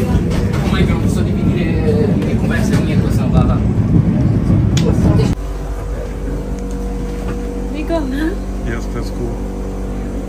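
Cabin noise inside a vintage electric tram: a loud, dense rumble of the car running along the rails. About five seconds in it cuts off abruptly, leaving a quieter steady hum with faint voices.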